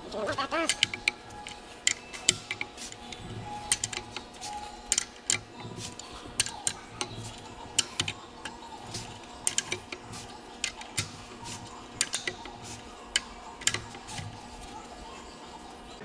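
Hand ratchet on a socket clicking in irregular runs of sharp clicks while steel main bearing cap bolts are backed off after their first torque. A faint steady hum runs underneath.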